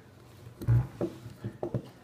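A fixed-blade knife handled against a block of wood: a dull thump, then several light clicks and taps.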